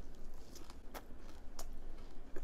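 A person chewing a mouthful of butterbur-leaf rice wrap (ssambap), with a few sharp mouth clicks about a second in and again shortly after.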